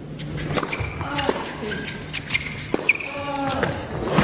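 A tennis rally on an indoor hard court: a serve, then the ball struck back and forth with sharp racket cracks, and sneakers squeaking on the court between shots.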